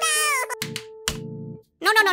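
A short, high-pitched squeaky cartoon-style vocal sound effect, about half a second long, over held background music notes, followed by two short buzzing sound effects about halfway through.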